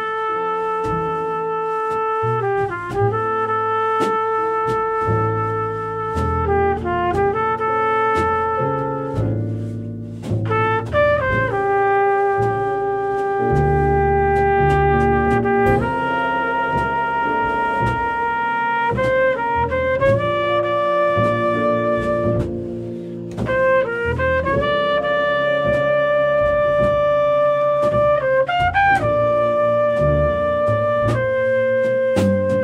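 A small jazz combo playing live: trumpet and saxophone carry the melody together in long held notes joined by quick runs, over drums with cymbals, piano and upright bass.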